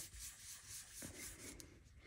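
Faint rubbing strokes of a foam ink blending brush working ink into cardstock.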